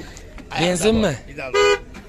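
Men's voices calling out, then a short, steady-pitched car horn toot about one and a half seconds in.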